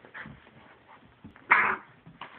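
Red-nose pit bull puppies play-fighting, with brief puppy vocalising: a faint short sound just after the start and one loud short yap about a second and a half in.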